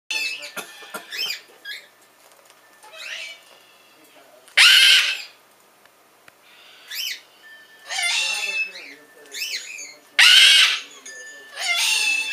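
Cockatoos calling, a Triton cockatoo responding to a bare-eyed cockatoo's calls with a bare-eyed cockatoo in the background: a string of short chirps and whistles that glide up and down, broken by two loud screeches, one midway and one near the end.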